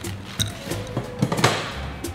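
Ice poured from a bar scoop into a glass, clattering in several sharp clinks near the middle, over background music.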